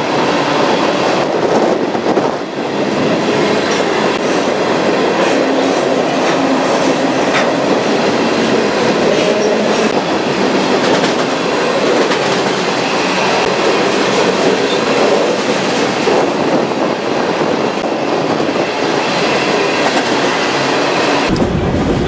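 Freight train rolling at speed, heard from aboard one of its cars: a loud, steady rumble and rattle of the wheels on the rails, with a few sharper clacks.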